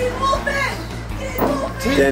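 Several excited voices shouting and whooping, one calling "Teen Wolf it!", over background music with a steady bass line.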